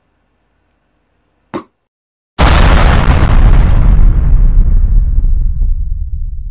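An explosion sound effect: a sudden, very loud blast about two and a half seconds in, its hiss dying away over the next few seconds while a low rumble carries on. A brief short sound comes about a second before the blast.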